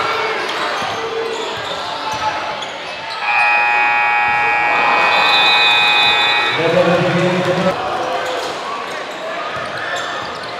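Gym crowd noise with a basketball dribbling on the hardwood. About three seconds in, the scoreboard horn sounds for about three seconds to end the third quarter, and a shorter, lower tone follows about a second after it.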